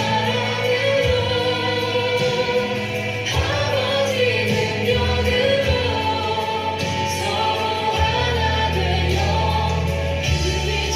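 Christian worship song, a choir singing a flowing melody over instrumental backing with long held bass notes.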